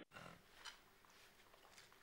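Near silence at a breakfast table, with a couple of faint short clinks of tableware in the first second.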